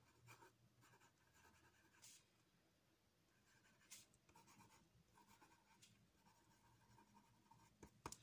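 Faint scratching of a pencil writing on sketchbook paper, in short broken strokes with a few light ticks.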